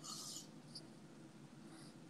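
A faint, short sip of bourbon drawn from a glass near the start, with a tiny mouth sound after it.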